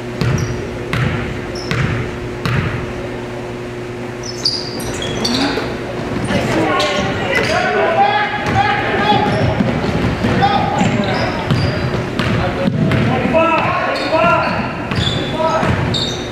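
Basketball bouncing on a hardwood gym floor, about four dribbles in the first three seconds, echoing in the hall. From about six seconds in, indistinct shouting from players and onlookers runs over further bounces as play gets going.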